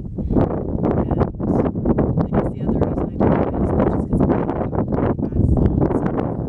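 Strong wind buffeting the camera microphone, a heavy gusting rumble, with a woman's voice talking partly buried under it.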